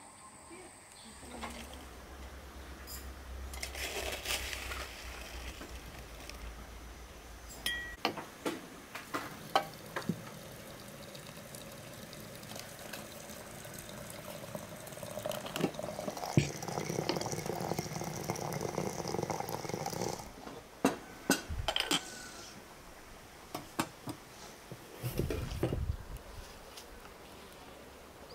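Tea-making sounds: hot water running from a samovar's tap into a porcelain teapot, with sharp clinks of china and utensils before and after the pour.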